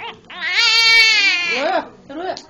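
An eleven-day-old newborn baby crying: one loud wail about a second long that rises and falls in pitch, then a shorter cry near the end.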